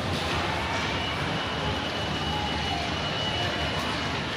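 Steady hum and hiss of an inclined moving walkway running in a shopping mall, with the mall's background noise and a faint high steady whine through the middle.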